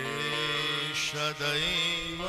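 Devotional chanting sung with musical accompaniment, the voice holding long notes that slide upward in pitch near the end.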